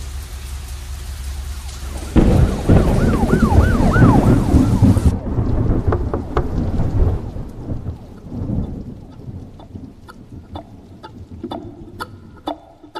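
Thunderstorm: steady rain, then a loud clap of thunder about two seconds in that rumbles on for a few seconds. The rain cuts off suddenly about five seconds in, leaving scattered clicks, and a few plucked notes start near the end.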